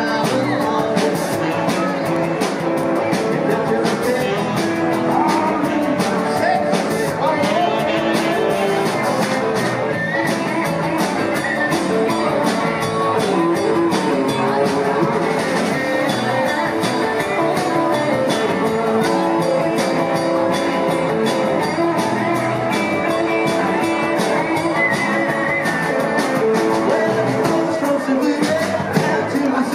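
Live rock band playing, with electric guitars, keyboard and drum kit, keeping a steady beat.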